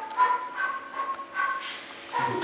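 Flute played: four or five short notes close together in pitch, each with a fainter higher tone above it.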